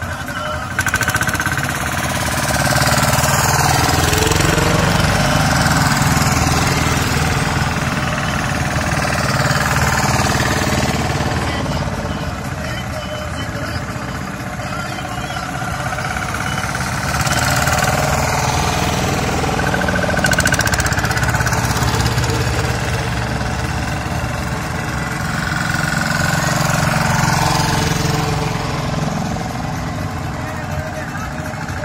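Small single-cylinder engines of two-wheel tractors (motokultivators) pulling trailers, chugging as they drive past one after another; the sound swells and fades several times as each one nears and passes.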